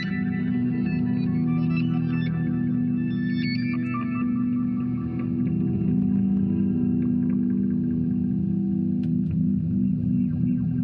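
1960 Fender Jazzmaster electric guitar played through effects pedals: a steady, layered drone of held low notes with an ambient, reverberant wash. A few scratchy string noises come in near the end.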